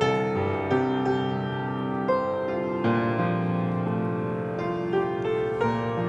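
Grand piano played solo: slow, gentle chords and melody notes, each struck and left to ring into the next.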